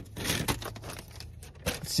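Paper fast-food burger wrapping crinkling and tearing as it is unwrapped by hand, in short irregular rustles with a few sharp crackles.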